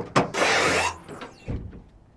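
First-gen Toyota Tundra tailgate being unlatched and lowered: a click from the latch, about half a second of rubbing noise from the hinges as it swings down, and a thump about a second and a half in as it comes to rest on its support cables. The new hinge bushings are still dry and not yet greased.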